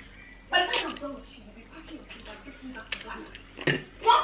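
Eating sounds while chewing goat head, with a short spoken phrase about half a second in. Two sharp clicks of dishes come in the second half.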